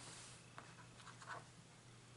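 Faint rustling and scraping of hands smoothing a crocheted yarn panel flat on a cutting mat, with a few soft brushing sounds around the middle.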